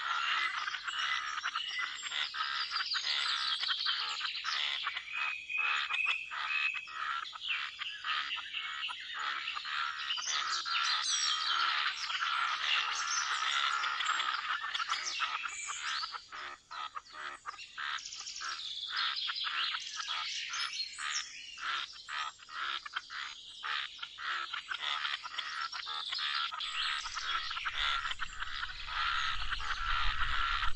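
Pond ambience: a dense chorus of frogs with birds chirping over it, many overlapping short calls and a steady underlying trill. A low rumble comes in near the end.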